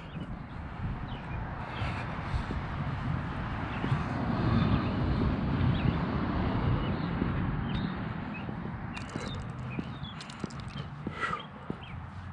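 Footsteps of a person walking across asphalt and concrete, with wind rushing over the microphone that swells midway.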